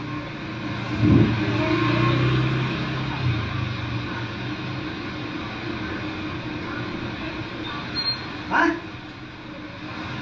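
Steady rush of a flooded river running high and fast. In the first few seconds a low hum sits under it, and a short voice-like call comes near the end.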